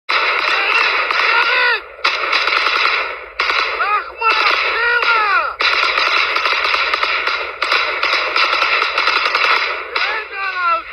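Automatic rifle fire in long rapid bursts broken by short gaps, with men's voices shouting over it.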